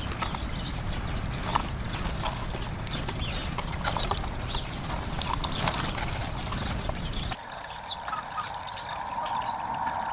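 House sparrows chirping, with many short chirps over a low steady rumble. About seven seconds in, the rumble stops suddenly and water trickling from a small spout into a stone bird bath comes in, with the chirps going on over it.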